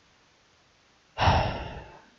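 A man sighs once: a long, breathy exhale that starts about a second in and fades away.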